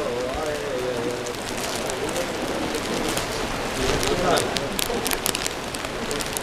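Indistinct murmur of people talking in a room over a steady hiss, with scattered clicks and rustles that grow denser in the second half.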